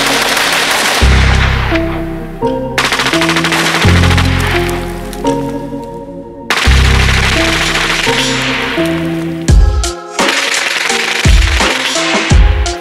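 Hip-hop beat with heavy bass notes overlaid with a machine-gun sound effect: three passes of rapid gunfire, each fading out, before drum hits take over near the end.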